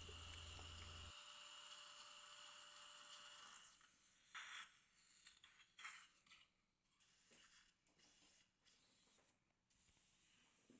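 Near silence: a faint steady hum for the first few seconds, then two brief faint sounds in the middle.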